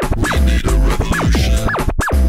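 Breakbeat music played from vinyl in a live DJ mix: heavy bass kicks under a synth note that swoops up and falls back in pitch about twice a second, with a scratchy, noisy texture through the middle.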